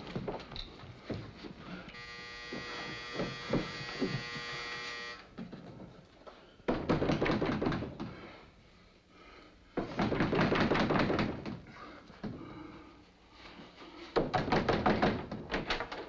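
A doorbell buzzer sounds steadily for about three seconds, then there is loud knocking on a wooden door in three bouts. The police are at the door.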